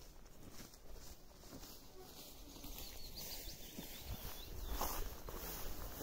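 Footsteps swishing through tall meadow grass, the rustling growing louder over the last couple of seconds as the walker comes closer, with a few faint bird chirps about three seconds in.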